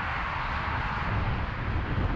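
Steady freeway road and traffic noise from a moving car: a low rumble under a broad hiss, the hiss swelling a little in the first second or so and then easing.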